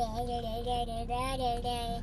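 A voice holding one long, steady sung 'aah' note for about two seconds, with a slight waver, stopping near the end.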